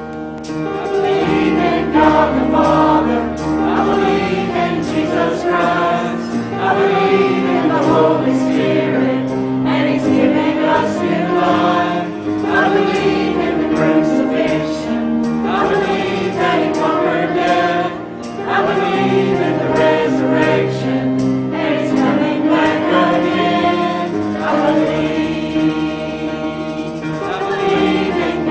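Church choir singing a hymn with piano accompaniment.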